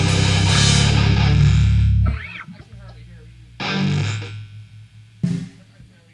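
Improvised heavy metal band playing loud with distorted guitar and bass, breaking off about two seconds in. The quieter stretch after holds a few separate distorted guitar hits that ring and fade.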